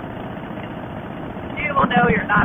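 Steady wind and engine noise from a 2005 custom Harley-Davidson Fat Boy under way, picked up by a camera mic on the bike. The rider's voice starts about a second and a half in.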